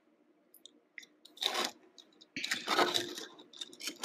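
Light handling noise of a small die-cast toy car being turned in the hands and set down on a table: a few small clicks and two short rustling scrapes, the longer one about two and a half seconds in.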